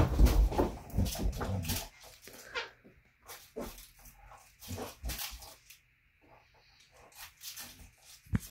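A dog romping on a fabric couch and chewing a toy: a loud low rumble of movement for about the first two seconds, then scattered short scuffs and clicks with quiet gaps between them.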